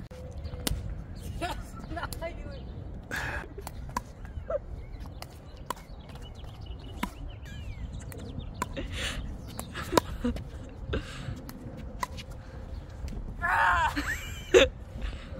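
Pickleball rally: sharp, irregular pops of carbon-fibre-faced paddles striking a perforated plastic ball, and the ball bouncing on the hard court. Brief voices come between the hits, with a louder call near the end.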